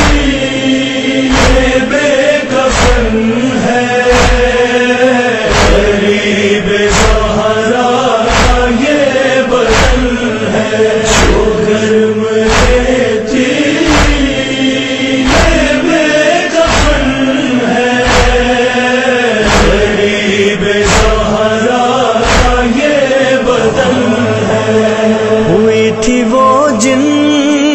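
A chorus chanting the refrain of a noha lament in long, held, wavering tones, over a steady beat of thumps about one every 0.7 seconds.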